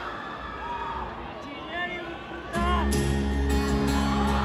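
Crowd voices and a few whoops, then about two and a half seconds in an acoustic guitar comes in loudly, playing sustained chords as a song begins.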